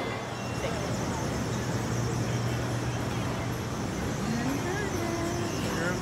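Steady street traffic noise with a low engine hum, fading somewhat about halfway through, and faint distant voices near the end.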